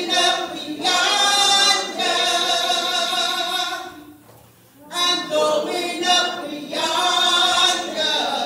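A choir singing a slow song without instruments, in long held notes: one phrase, a short breath about four seconds in, then another.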